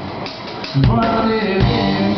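Live rock music from an electric guitar and a drum kit. The music eases off for most of the first second, then the full guitar and drums come back in loud with a hard drum hit just under a second in.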